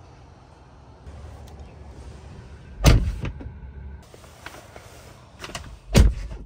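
A Tesla Model 3 door shutting with a loud, deep thud about three seconds in, amid low handling rumble. A few light clicks follow, then a second thump at the very end.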